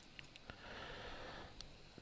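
A very quiet pause in a video call. A faint breath is heard through a microphone for about a second, starting about half a second in, with a few tiny clicks.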